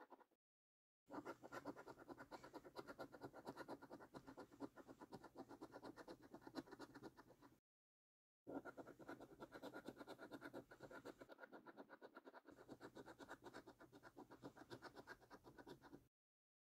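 A coin edge scratching the scratch-off coating from a scratch card in rapid back-and-forth strokes. The scratching stops dead twice, just under a second in and about halfway through, then picks up again.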